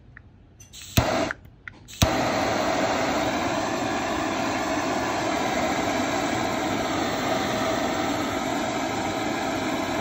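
Iroda butane torch being lit: a click and a short spurt of gas about a second in, a sharp click as it ignites at two seconds, then the jet flame running with a steady hiss. The flame burns at full pressure after the refill.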